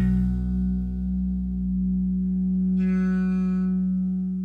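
The final chord of a rock song on electric guitar and bass, held and ringing out as it slowly dies away. A brief high shimmer of overtones rises over it about three seconds in.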